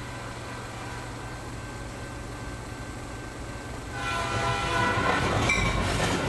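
Train sound effect: a steady low rumble of a train running along, then a horn sounding several notes at once about four seconds in, held and louder.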